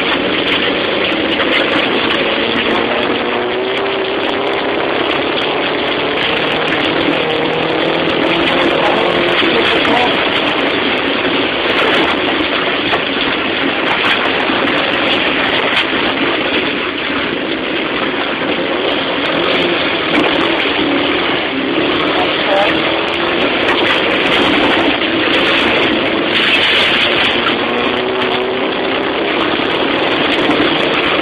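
Car engine heard from inside the cabin, its revs rising and falling as it drives, over steady loud road noise from the tyres on a wet, slushy road.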